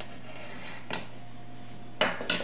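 Steady low background hum, with a single soft click a little under a second in.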